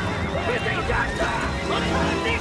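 Cavalry horses whinnying in panic over a loud battle din, with a man shouting an order and dramatic orchestral score underneath. The horses are frightened by the bladed sword-carts in front of them.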